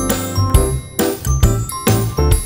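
Background music: a light, tinkly bell-like melody over a bass line and a steady beat of about two strokes a second.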